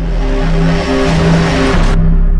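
Loud closing music swell: held low notes that change in steps beneath a rising rush of noise.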